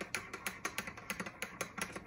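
Metal teaspoon clinking against the inside of a porcelain cup while stirring a cappuccino: a quick run of light clinks, about seven a second.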